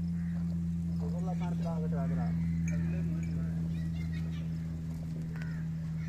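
A steady low mechanical hum, the loudest sound throughout, with brief voice-like calls at about one to two seconds in.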